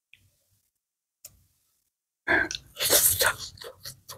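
Close-miked crunchy chewing of crispy fried fish, which starts suddenly about two seconds in after near silence and goes on as a run of irregular crackling crunches.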